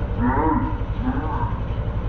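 Petrol push lawn mower engine running steadily. Over it comes a drawn-out, wavering voice-like sound that shifts in pitch.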